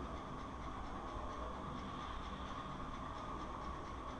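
Steady low background noise between speech: even hiss with a faint steady whine and a low hum, unchanging throughout.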